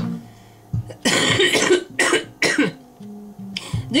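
A woman coughing about three times, starting about a second in, over quiet background music.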